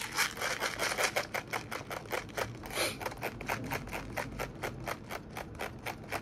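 Thumb wheel of a G&G 300-round airsoft rifle magazine being wound, giving a rapid, steady ratcheting of clicks, roughly nine a second.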